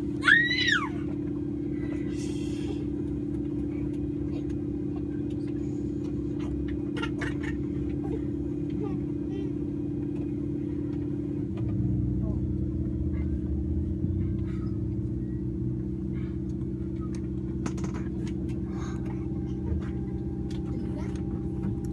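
Steady drone and hum of a Saab 340B's General Electric CT7 turboprop engines heard inside the cabin during engine start. A short, high squeal rises and falls in the first second. About halfway through, the low rumble deepens and grows louder.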